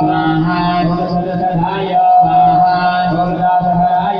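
Hindu devotional mantra chanting in long, drawn-out held notes during a puja, steady and continuous with brief breaks for breath.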